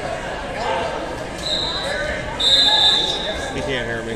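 A wrestling referee's whistle blown twice, a short blast and then a longer, louder one, over the murmur of voices in a gym.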